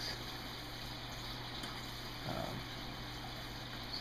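Water running steadily into an acrylic aquarium sump as it is filled for a leak test, with a steady low hum underneath.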